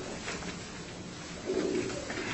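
Papers being handled and leafed through at a table, with a short low hum-like sound about one and a half seconds in.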